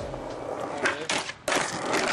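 Skateboard wheels rolling on concrete, with several sharp clacks from the board. The rolling sound cuts out briefly and starts again about one and a half seconds in.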